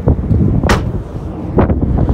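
Wind buffeting the microphone, a dense low rumble, with a sharp click about two-thirds of a second in and a fainter one near the end.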